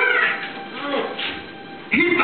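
A man singing into a microphone in a high, wavering, melismatic phrase that trails off about half a second in. A fainter stretch follows, and a new loud phrase starts right at the end.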